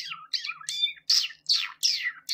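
A quick series of short, high-pitched chirping calls, each sliding down in pitch, about three a second.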